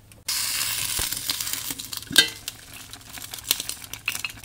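Water boiling hard in a stainless pot of noodles on a 12-volt DC hotplate: a hissing, bubbling sound that starts suddenly just after the start and slowly fades. Two sharp metallic clinks come about one and two seconds in.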